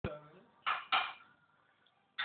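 Three sharp hits within the first second, each ringing briefly and fading, the last two close together; then quiet.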